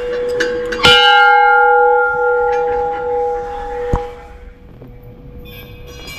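Large brass temple bell (ghanta) struck once by its hanging clapper about a second in, ringing with several clear tones that slowly fade over the next few seconds, over the hum still sounding from an earlier strike. A single dull thump near four seconds.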